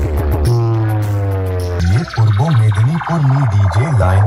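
Heavy electronic bass track played loud through a DJ speaker stack: a long, deep held bass note, then from about two seconds in a bass line that wobbles up and down in pitch a few times a second.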